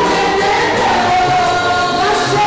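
A choir singing with music, loud and steady, with long held sung notes.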